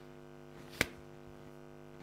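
A single sharp knock about a second in: a cloth-wrapped arrow prop struck once on the stage floor. Under it is a steady electrical mains hum.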